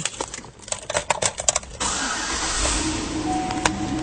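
Key clicks and rattles in the ignition, then the 2008 Hummer H3's 5.3-litre V8 starts about two seconds in and keeps running steadily.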